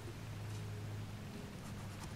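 Faint scratch of a pencil marking a sheet of card along a steel rule, over a low steady hum.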